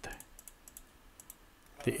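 A quick run of light clicks from computer keyboard keys, then a spoken word near the end.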